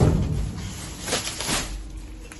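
A reach-grabber pole knocking and rustling among plastic bags and foam blocks inside a metal dumpster as it drags at a flower arrangement: a heavy thump at the start, then rustling with a couple of sharp clicks.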